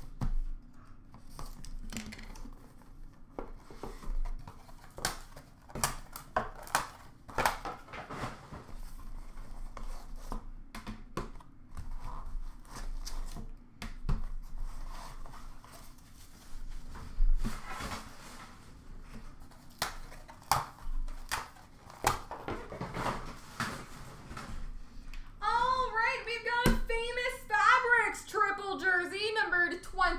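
Scattered clicks, scrapes and knocks of a trading-card box being opened by hand, its insert lifted out and a hard plastic card case handled, with speech near the end.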